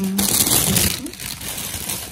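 Plastic grocery bags and wrapping crinkling as they are handled, loudest in the first second and then softer.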